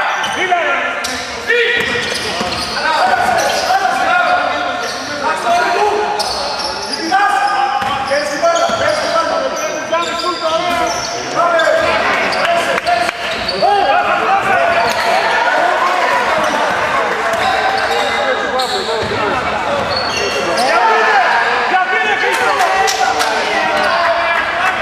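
Basketball game sounds in a gym: overlapping shouting voices of players and spectators, continuous throughout, with a basketball bouncing on the hardwood court.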